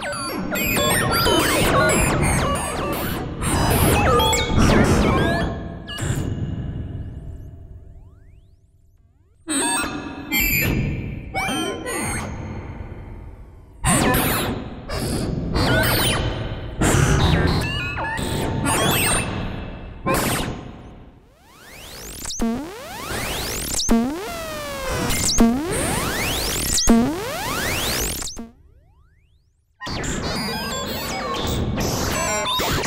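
Buchla 200e modular synthesizer playing a semi-random percussive patch through a spring reverb: clusters of sharp electronic hits, hisses and spits with ringing tails, broken by two short near-silent gaps. In the later part, pitch sweeps and repeated pings take over.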